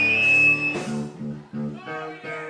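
Live rock band playing with guitars. A held chord rings and stops a little under a second in, then short low notes repeat evenly, about four a second.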